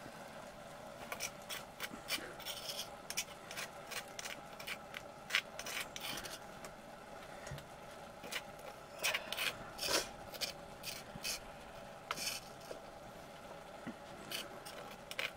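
Stone on stone: a hand stone rubbed over a flat grinding slab (silauto) to grind wet spice paste, then a metal utensil scraping the paste off the stones, giving many short, irregular rasping scrapes.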